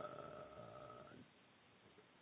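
A man's drawn-out "uhh" hesitation, held on one pitch and trailing off a little over a second in, then near silence.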